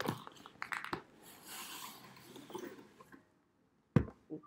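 Rustling and a few light clicks of a cardboard box being opened and a folded baby carrier being pulled out of it. After that comes a moment of dead silence, then a single sharp click near the end.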